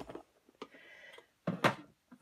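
Small plastic storage box being shut and set down: a light click about half a second in, then two sharper knocks of plastic near the end.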